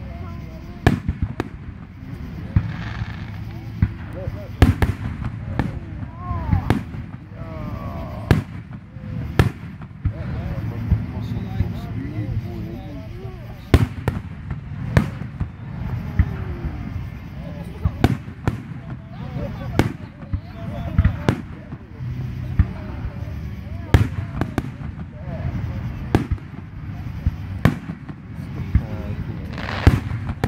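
Aerial fireworks bursting in a continuous barrage: sharp bangs at irregular intervals, often about a second apart, over a steady low rumble.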